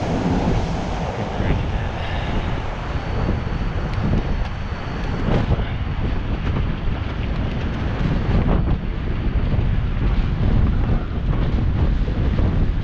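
Wind buffeting the microphone of a bicycle-mounted action camera while riding, over the low rumble of city traffic, with a couple of brief knocks partway through.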